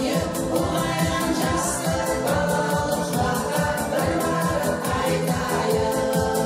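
Women's vocal ensemble singing a song over a quick, steady beat.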